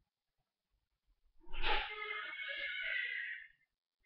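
A person's long breathy sigh, starting about a second and a half in and lasting about two seconds.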